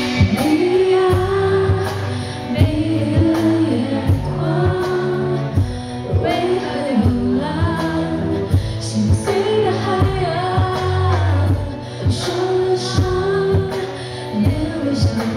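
Live pop-rock band playing loud through a concert PA: a woman singing lead over guitars, keyboards and a steady drum beat.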